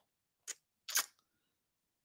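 Two short, sharp clicks about half a second apart, the second a little longer.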